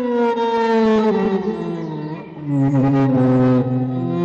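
Film score: a bowed string melody slides slowly downward in pitch, and a lower sustained string note enters about halfway through.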